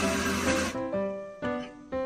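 Electric espresso grinder running as it grinds coffee into a portafilter, stopping abruptly under a second in. Background music with held notes plays throughout.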